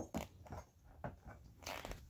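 Faint handling of a thin bent steel sheet on carpet: a knock at the start, then a few light ticks and rubs, with a short scraping rustle near the end.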